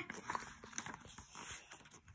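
Faint rustling and light ticks of a paperback picture book's pages being handled and turned.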